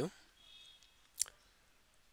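Quiet room tone with one sharp, short click just past the middle.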